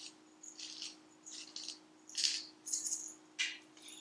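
Pepper mill grinding black peppercorns: a quiet series of short, scratchy bursts, about two a second, one for each twist of the mill.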